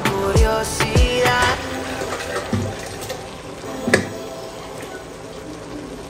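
Liquid pouring steadily from a steel saucepan into a blender jar, with a single light knock about four seconds in.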